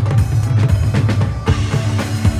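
Live band playing an instrumental stretch of a Punjabi pop song: a steady, driving drum beat with dhol and keyboard, no singing.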